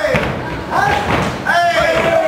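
People shouting loudly during a kickboxing bout, with dull thuds of strikes landing.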